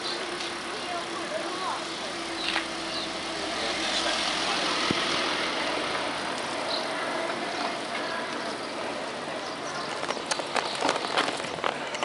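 Ride along a paved promenade from a bicycle: a steady rolling noise with people's voices in the background. Near the end, a run of sharp clicks and rattles.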